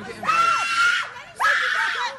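Women screaming during a physical fight: two long, high-pitched screams, the second starting about a second and a half in.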